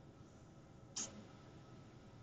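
Faint room tone with one short, sharp click about a second in.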